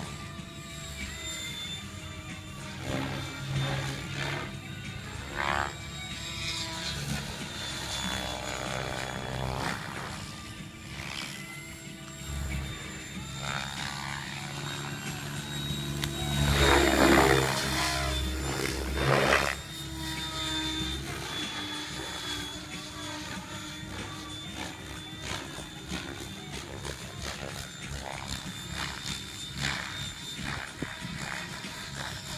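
Mikado Logo 600 SX electric RC helicopter flying 3D manoeuvres: a steady high motor whine with rotor-blade noise that rises and falls in pitch as the blades load and unload. It is loudest for a few seconds just past the middle, as it passes close.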